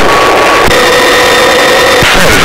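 Helicopter engine and rotor noise, loud and steady, with level whining tones that shift in pitch about two-thirds of a second in.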